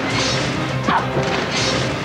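Movie-trailer soundtrack: a sustained low music drone with two loud crashing hits, one near the start and one about one and a half seconds in.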